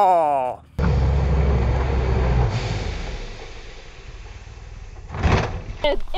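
A drawn-out 'ohhh!' cry whose pitch falls as the side-by-side goes over onto its side, cut off under a second in. Then a low, steady rumble that fades over the next few seconds, with a short sharp knock near the end.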